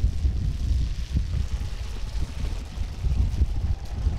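Sidecar motorcycle engine running with a low, uneven rumble as the bike rides past on a muddy dirt road, with wind buffeting the microphone.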